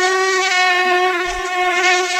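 Mosquito wingbeat whine, loud and close: one steady buzzing pitch with many overtones, wavering slightly.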